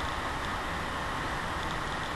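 A steady, even hiss of background noise with a low rumble under it, unchanging throughout, as picked up by a webcam microphone in a pause between words.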